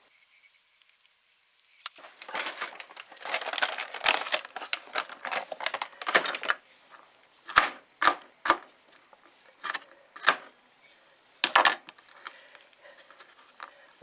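Kitchen knife chopping walnuts on a plastic cutting board. About two seconds in there are a few seconds of dense crunching and crackling, followed by scattered sharp knocks of the blade on the board.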